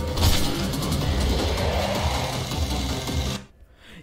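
An action cartoon's soundtrack playing loudly: driving music with a pulsing bass under rapid, rattling effects. It cuts off suddenly about three and a half seconds in, when playback is paused.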